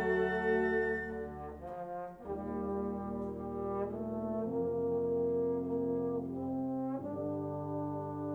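A wind orchestra playing sustained brass chords that change every two to three seconds. The high parts fall away about a second in, leaving a softer, lower passage.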